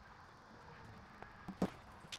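Quiet room tone, then a few brief clicks and a sharper knock in the second half.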